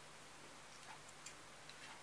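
Near silence with a few faint, scattered small ticks from hands handling wood shavings and the small wooden figure on its plastic base.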